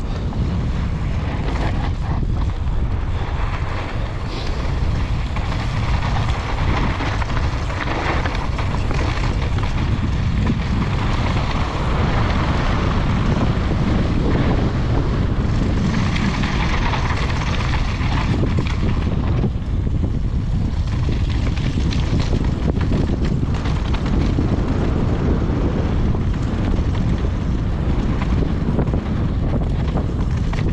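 Steady wind buffeting on the action camera's microphone from a fast downhill mountain bike descent, mixed with the tyres rolling over loose dry dirt and gravel.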